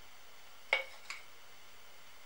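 Two light, hard clinks about half a second apart, the first louder, each with a brief ringing note, as of a glass honey jar or utensil touching the porcelain cup. A steady faint hiss lies underneath.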